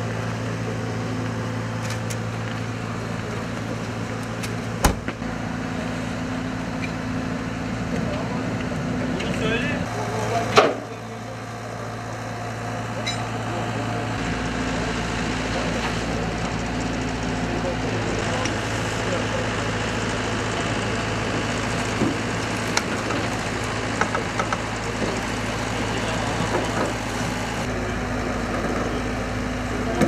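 A vehicle engine idling with a steady low hum, under faint voices. Two sharp knocks stand out, about five seconds in and about ten and a half seconds in, the second the louder.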